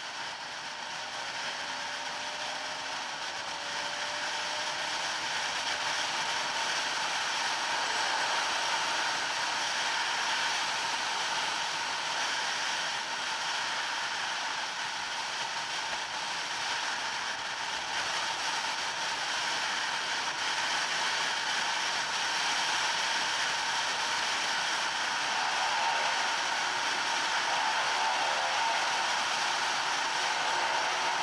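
Bajaj Pulsar NS200 motorcycle riding at speed: a steady wind rush over the microphone with the single-cylinder engine underneath, rising in pitch and loudness over the first few seconds as it accelerates.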